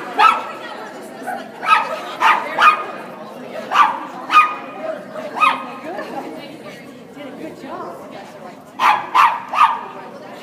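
Dog barking in short, sharp barks that come in clusters, with a pause in the middle and a quick run of three barks near the end.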